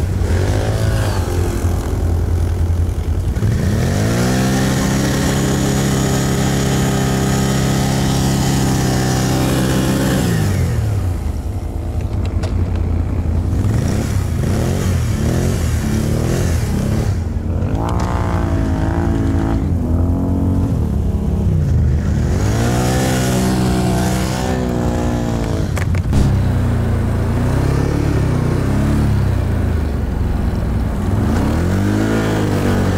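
Can-Am ATV engine revved hard and held high for several seconds, then revved again in shorter rises and falls, as the quad's wheels spin and dig into deep snow. Another ATV engine idles steadily underneath.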